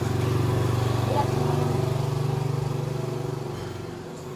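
A motor vehicle engine running at a steady low pitch, fading away in the last half second or so.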